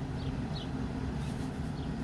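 Steady low rumble of a truck idling with its air conditioning running, heard from inside the cab, with a few faint short high chirps.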